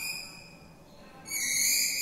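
Chalk squeaking on a blackboard as lines are drawn: a short high-pitched squeal at the start, then a longer, louder one from a little past halfway.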